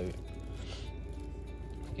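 Quiet background music, with a brief soft rustle of plastic wrapping and cardboard a little under a second in as a packaged part is slid out of its cardboard insert.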